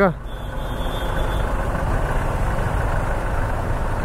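Yamaha sports motorcycle's engine running low and steady, with the traffic of a jammed street around it.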